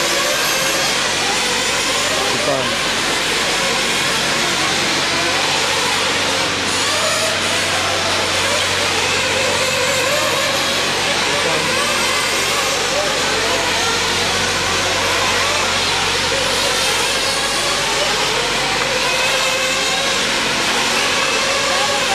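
Several 1/8-scale RC truggies racing together, their motors revving up and down continuously as they go round the track, with people's voices in the background.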